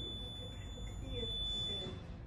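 A steady high-pitched electronic tone, a single held note, cutting off just before the end, with faint voices underneath.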